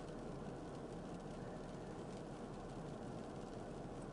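Faint, steady background hiss and low rumble of a car cabin, with no distinct events.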